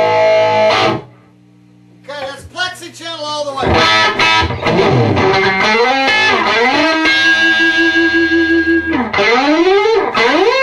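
Overdriven electric guitar through a custom Marshall Plexi-style valve amp build (V2a cathode resistor 33k). A held chord is choked off about a second in, leaving a second of low amp hum. Then comes a lead line full of string bends, with a long sustained bent note near the end.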